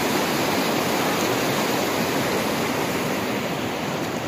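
Shallow, fast stream rushing and splashing over a rocky bed close by, a steady loud rush of water.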